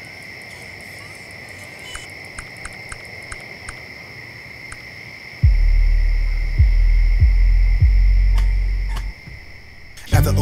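Insects, likely crickets, chirping as a steady high-pitched hum, with a short run of light ticks about two seconds in. About five seconds in, a loud deep sub-bass from the song's beat comes in with a few thumps and drops away near the end.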